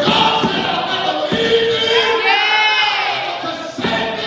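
A preacher's amplified voice shouting and half-singing in long, drawn-out notes rather than ordinary speech; a little after two seconds one note rises and falls.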